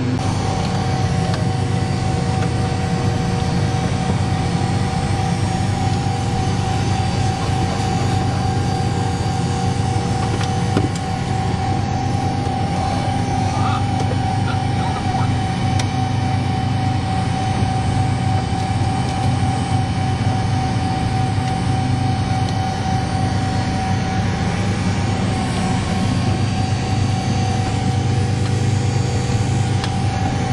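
Steady drone inside the cockpit of a parked C-135-type jet: a constant low hum from the onboard systems and cooling fans, with a steady whine above it.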